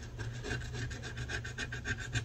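A thin metal tool rapidly scratching the silver coating off a paper scratch-off savings card, in quick even back-and-forth strokes.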